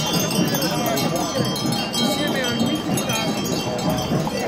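Bells on the draught horses' harness ringing continuously as the team walks, over the voices of the crowd.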